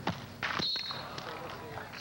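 A sharp smack as the volleyball is jump-served. About half a second later comes a louder burst and a short, high referee's whistle blast calling the serve a fault, over a steady crowd murmur.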